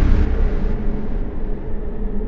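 Deep rumble of a boom sound effect dying away, fading steadily after a loud burst that has just ended.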